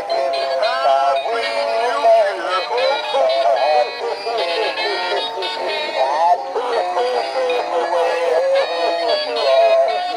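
Battery-operated animated Santa Claus figures playing electronic Christmas music with synthesized singing, continuing without a break.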